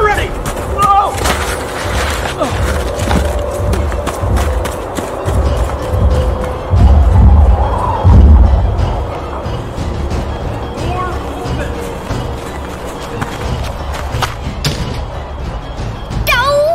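Heavy, booming footfalls of a giant dog chasing through snow, loudest about five to nine seconds in, over dramatic background music.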